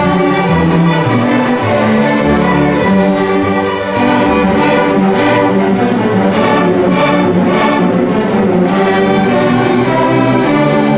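Large youth string orchestra playing in sustained ensemble, violins prominent over the lower strings.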